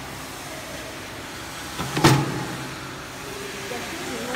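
Hydraulic punching press striking once about two seconds in, a sharp thud with a short low rumble as the punch head comes down through the stack of plastic bags, over the steady hum of the running machine.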